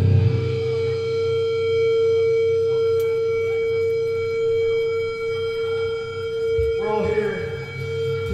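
A steady, unchanging feedback tone from a guitar amplifier, ringing on after the band stops playing, with a few voices heard briefly about seven seconds in.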